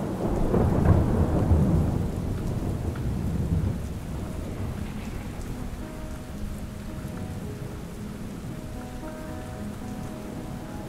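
A long, low roll of thunder over steady rain, loudest in the first second or two and fading out by about four seconds in. Rain then falls evenly, and soft music with held notes comes in faintly under it in the second half.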